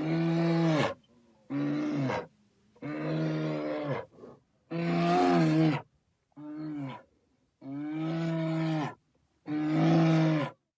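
A deep animal call repeated seven times, each call under about a second and a half, steady in pitch and dropping slightly at its end, with clean silent gaps between them.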